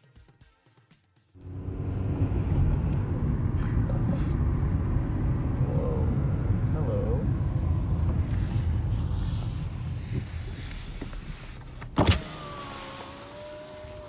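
Road and engine noise inside a moving car's cabin, a steady low rumble that starts about a second in and eases off toward the end. About twelve seconds in there is a sharp click, then the whine of a power window motor as a side window winds down.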